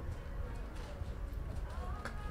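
A horse's hoofbeats as it runs on soft arena dirt: dull, low thuds coming fast and unevenly.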